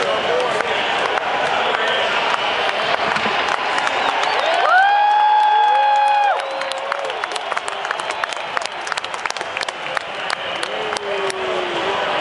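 Stadium crowd of football fans cheering and clapping. About five seconds in, a loud held note rises in over the noise and lasts about a second and a half, followed by a lower held note. Through the second half, many sharp claps stand out nearby.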